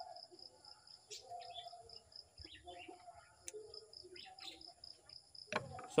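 Quiet backyard ambience: an insect chirping steadily about four times a second over a faint high hum, with soft scattered chicken calls. A couple of light clicks come from tape being cut.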